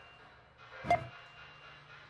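Supermarket checkout barcode scanner beeping once, about a second in, as an item is swiped across it, a short swish of the item leading into the beep.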